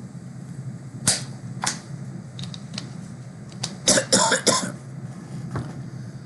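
Sharp clicks and knocks close to the microphone: one about a second in, another shortly after, a few lighter ones, then a loud tight cluster a little past the middle, over a steady low hum.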